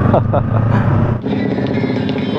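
Motorcycle engine running at low speed, a steady low hum, with brief voices over it. The engine sound cuts off abruptly just over a second in, leaving a lighter steady background hum.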